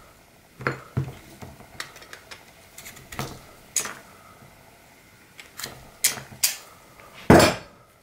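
Scattered sharp clicks and knocks of hard plastic as an airsoft electric pistol's grip and frame are handled and pulled apart, parts clattering on a plastic work mat; the loudest knock comes near the end.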